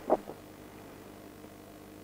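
Room tone with a faint, steady low hum during a pause in speech.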